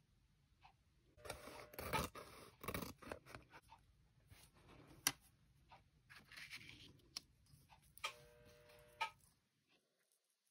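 Sheets of kiln shelf paper (Thinfire) being handled and slid over a worktable, rustling in irregular bursts with a few light clicks and a brief rasp near the end.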